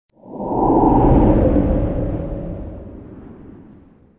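A whoosh sound effect with a low rumble. It swells up within the first half second, then slowly fades away over about three seconds.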